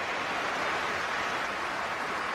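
Football stadium crowd: a steady wash of many voices just after a shot curls narrowly wide.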